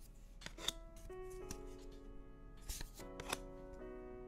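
2024 Topps Series 2 baseball cards being slid off the top of a stack by hand: two short clusters of crisp card flicks and swishes, about half a second in and about three seconds in, over soft background music of held notes.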